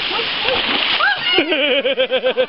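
Shallow stream water running over rocks, with splashing from children wading in it. About one and a half seconds in, a child's high voice joins, its pitch wobbling quickly up and down.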